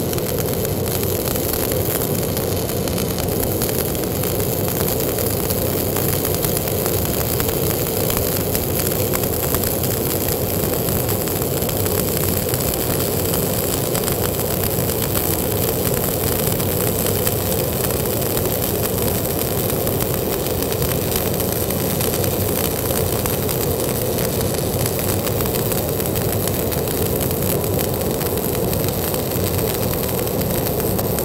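Stick (SMAW) welding arc crackling steadily and without a break as the electrode is dragged along a lap joint.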